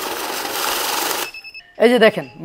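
Electric banknote counting machine running a stack of notes through with a fast, steady rustling whir for a little over a second, then stopping suddenly and giving a short high electronic beep. The stop and beep are the machine's alarm on catching a suspect note.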